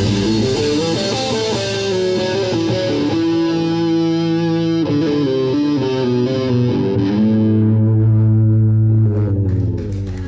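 Live rock band ending a song: distorted electric guitar and bass guitar hold long sustained notes and chords while the cymbals ring out and fade. The sound drops away near the end as the last chord stops.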